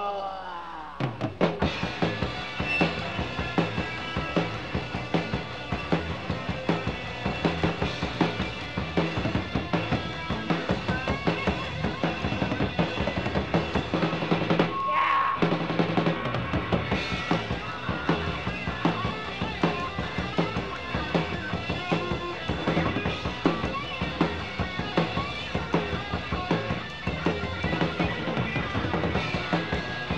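Live rock band playing an instrumental stretch between verses, with guitars and bass under a busy drum kit pounding out a quick, steady beat.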